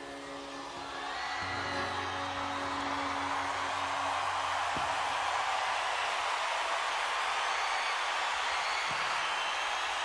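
A stadium crowd cheering and whooping at the end of a live rock song, the cheering swelling about a second in over the last held notes of the band, which fade out within a few seconds.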